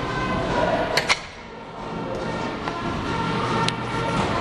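Gym room sound: indistinct background voices and music, with two sharp knocks in quick succession about a second in and another near the end.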